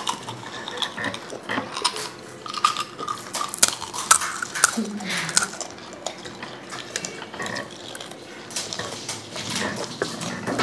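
Tableware clinking at a meal: scattered sharp clicks of a spoon and fingers against steel bowls and ceramic plates as panipuri is handled, with a few soft voices in between.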